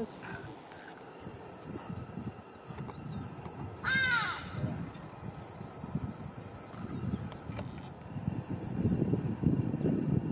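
A bird gives a single loud call about four seconds in, a short caw that rises and falls in pitch, over low rustling noise.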